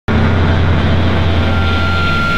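Loud, distorted intro sound with a heavy low rumble, starting abruptly and holding steady: the noisy opening of a channel logo sting.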